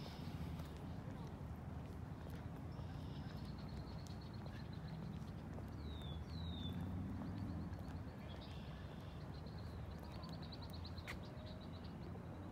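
Small birds chirping: two short rapid trills and a few quick downward-sliding notes, over a steady low outdoor rumble.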